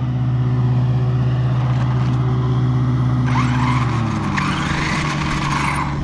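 A steady low hum, then from about three seconds in a Traxxas Maxx V2's Castle 1520 1650kv brushless motor and gear drive spin with a rough, rising whine for a few seconds. This is after a crash: the motor-mount screw has been ripped out of its thread, and the driver fears the spur gear is damaged.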